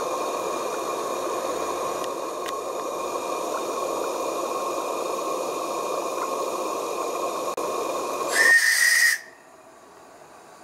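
A live-steam garden-railway locomotive hissing steadily while it stands, then one short, loud steam whistle blast about eight and a half seconds in, after which the level drops sharply.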